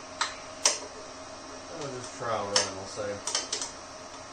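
Several sharp clicks and clinks from hand tools and parts being handled: two near the start and a quick cluster near the end. A brief wordless mumble or grunt falls in the middle. A faint steady shop hum runs underneath.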